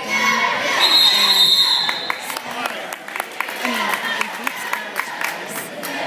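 Spectators' voices echoing in a gym during a basketball game. A long, steady, high whistle blast comes about a second in, then a basketball bounces several times on the court.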